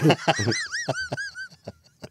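A person laughing in a run of about five squeaky, high-pitched squeals, each rising and falling in pitch, with short breaths between, trailing off after about a second and a half.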